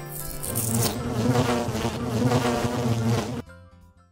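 Closing logo sound effect: a high hiss through the first second, then a low buzzing tone for about three seconds that cuts off suddenly.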